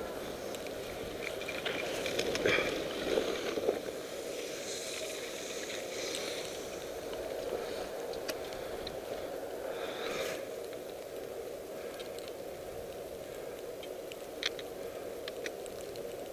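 Skis sliding over packed, groomed snow on a downhill run: a steady hiss with louder scraping swells as the edges bite on turns, about two to four seconds in, again around five to six seconds and near ten seconds.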